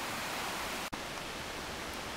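Steady rushing of the River Bran, an even wash of water noise, broken for an instant a little under a second in.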